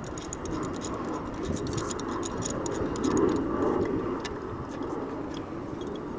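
Pipe wrench on a galvanized steel pipe elbow: small irregular metallic clicks and ticks as the jaws are set and worked on the fitting, over a steady low rumble that swells about halfway through.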